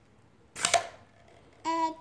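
A short, sharp burst of noise about half a second in, then near the end a baby starts vocalizing in short, even-pitched 'ah' sounds, the start of a fit of baby laughter.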